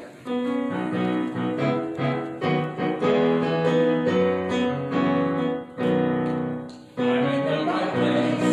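Piano playing the introduction to a congregational song in held chords and melody notes. Near the end the sound fills out as the singing begins.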